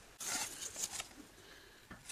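A paintbrush scraping and rubbing against a cardboard box in a quick run of strokes, loudest in the first second, then lighter handling with a few small clicks near the end.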